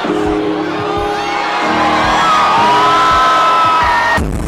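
Loud dance music over a nightclub sound system, with long held synth notes and crowd whoops.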